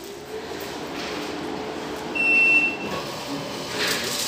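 Boot-pack automatic shoe-cover dispenser running its motor as it wraps a plastic shoe cover over a shoe, a steady low hum. About two seconds in it grows louder and gives one short high beep.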